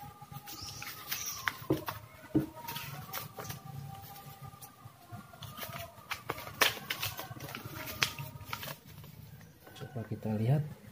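Paper instruction manual rustling as it is handled and unfolded, with scattered light clicks and taps from a small plastic multimeter being picked up and turned over. Faint steady tones run underneath.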